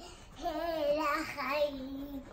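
A young girl singing, one drawn-out phrase with a slightly wavering pitch that starts about half a second in.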